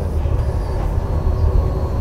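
Steady low rumble of a ship's machinery and ventilation, with a faint steady hum above it.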